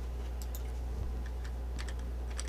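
A couple of faint clicks from a computer keyboard, pressed to step through the presentation slides, about half a second in and again near the end, over a steady low electrical hum.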